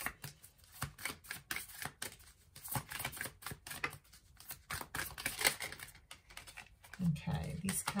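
A deck of oracle cards being shuffled by hand: a run of quick, irregular card clicks and flicks.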